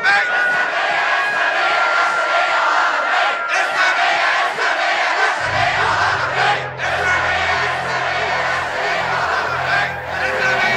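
A large crowd of protesters shouting together. About halfway through, low music comes in underneath.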